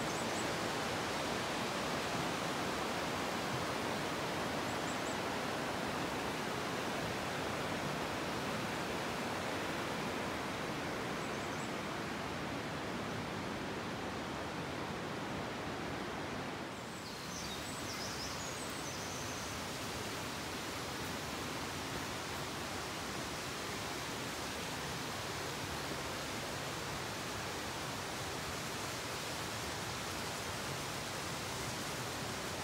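A steady, even rushing noise runs throughout, dipping briefly about halfway, with a few faint high chirps just after the dip.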